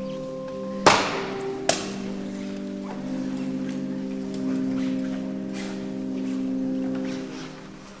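Slow music of long, steady held chords that shift every second or two and fade out near the end. About a second in, two loud sharp knocks ring out over it, under a second apart, the first the louder.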